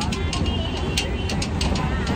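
Inside a passenger train coach: a steady low rumble with frequent sharp clicks and rattles, and other passengers' voices faintly in the background.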